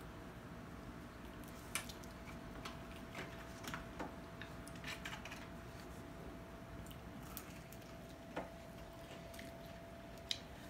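Faint sounds of people eating sauce-coated chicken wings: scattered small wet clicks and smacks of biting, chewing and handling the wings, over a faint steady hum.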